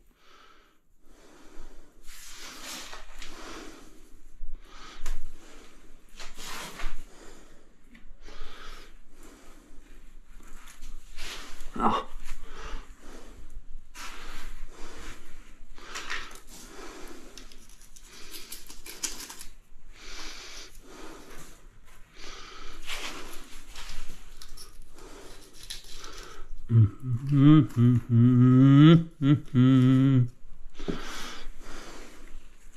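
A tiler's trowel scraping and spreading mortar in short, irregular strokes, with a single sharper knock about twelve seconds in. In the last few seconds a man hums a short wordless phrase.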